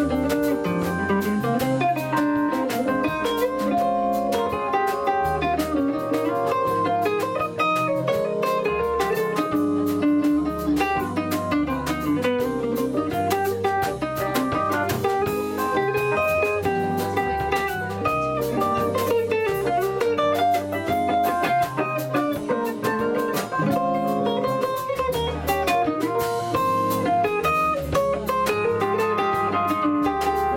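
A live jazz-style band playing together: hollow-body electric guitar, upright double bass, drum kit and Yamaha digital piano, with steady walking bass notes under the melody.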